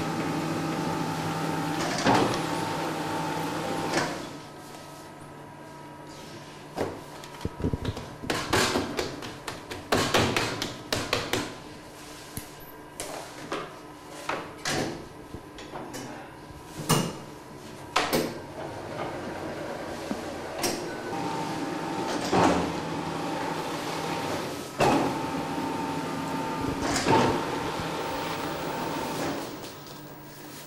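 A dough sheeter's motor running steadily for about four seconds and then stopping, followed by a long run of knocks and clatter from dough and trays being handled on a wooden bench. Near the end an Eberhardt bakery machine runs with a steady hum and a few thumps, and it stops just before the end.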